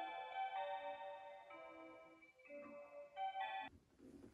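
Seiko QXM554BRH Melody in Motion musical clock playing one of its built-in melodies in held notes that change about once a second, cutting off suddenly near the end.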